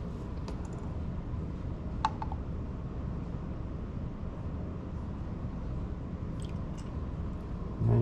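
Steady low hum with a few faint ticks of a steel jigger and glass bottle being handled, and one light clink about two seconds in.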